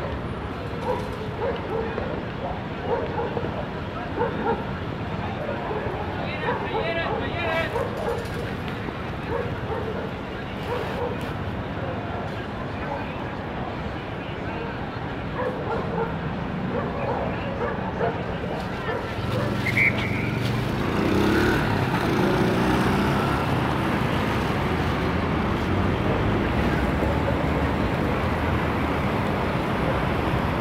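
Busy street ambience: traffic running with indistinct voices in the background, the traffic growing louder about two-thirds of the way in.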